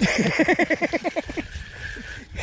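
Spinning fishing reel being cranked fast to retrieve line, giving a whir with a rapid, even pulse of about ten strokes a second that eases off after a second and a half.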